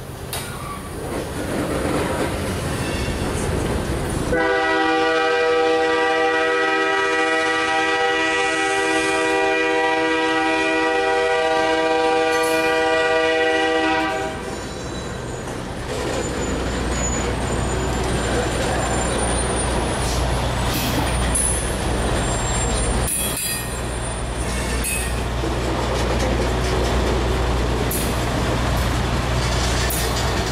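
A loaded freight train's tank cars and gondolas rolling slowly past. A train horn sounds one long, steady chord for about ten seconds starting about four seconds in. After that the passing cars give a low steady rumble with scattered clanks and faint high wheel squeals.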